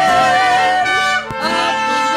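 Mariachi band playing: a male and a female singer hold a long note with vibrato over the band, which ends about a second in, and the trumpets then come in with the ensemble.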